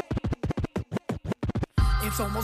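Hip hop track at a turntable scratch break: a fast run of short, chopped scratches with no beat under them. The full beat with heavy bass comes back in just before the end.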